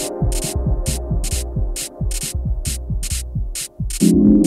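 Lo-fi electronic dance music: evenly spaced hi-hat-like ticks about three a second over a bass made of quickly falling pitch sweeps and held synth tones. The beat briefly drops out twice, the second time just before a new section starts.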